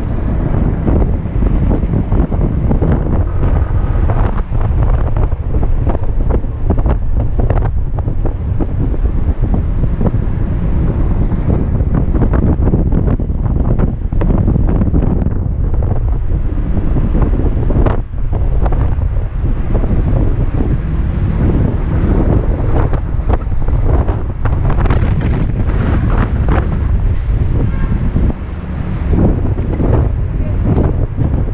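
Loud, steady wind rumble on the microphone of a moving Kymco Xciting 250 maxi-scooter, with the scooter's running noise mostly buried beneath it.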